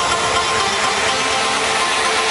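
Electronic dance track in a breakdown: a loud, steady wash of noise with a few held high tones, with the kick and bass cut out.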